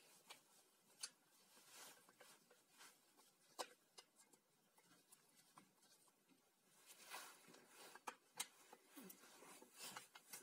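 Near silence, with a few faint clicks and soft scrapes as a screwdriver works the screws out of an angle grinder's housing.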